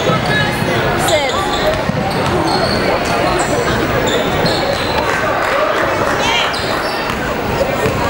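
Live basketball game sound in a gym: a basketball being dribbled on a hardwood floor, with players' and spectators' voices and a few short, high shoe squeaks.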